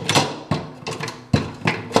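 Plastic old-work electrical box knocking and clicking against the wooden cabinet panel as it is pushed into its cutout: a string of sharp knocks, the loudest about a second and a half in.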